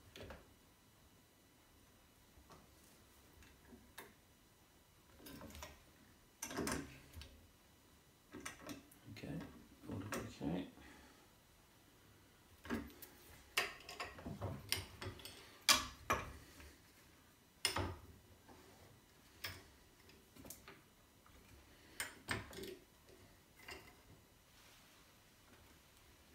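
Steel sash clamps and a bench vise being handled during a glue-up: irregular metallic clicks, clanks and short scrapes as the clamp bars and jaws are moved and set, with the sharpest knock about two-thirds of the way through.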